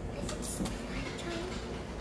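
Café background noise: a steady low rumble under faint voices, with a few short crackles about half a second in.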